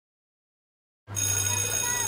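An electric school bell starts ringing suddenly about halfway through, after silence, and keeps up a steady ring.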